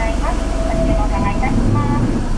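Steady low rumble of a car idling, heard inside the cabin, with a faint voice talking in the background.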